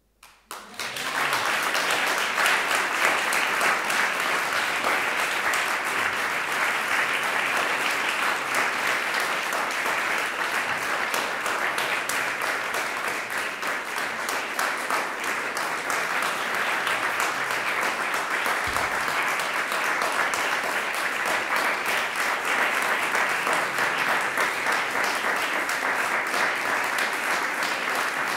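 Audience applause that breaks out within the first second and continues at a steady level.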